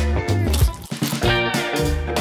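Background music with a steady beat and plucked guitar.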